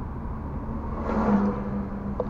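Oncoming heavy truck passing in the other lane: a swell of engine and tyre noise with a low engine hum, loudest about a second and a half in, then fading. Heard from inside a moving car, over its steady road rumble.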